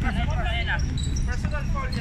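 Basketballs bouncing on an outdoor hard court, with players' voices in the background.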